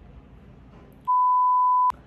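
A single steady 1 kHz beep dubbed in during editing, the standard censor-bleep tone, starting about a second in and lasting just under a second before cutting off with a click. The room sound drops out under it, as when a word is bleeped out.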